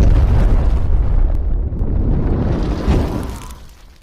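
Explosion sound effect: a loud, deep rumble that holds, then dies away near the end.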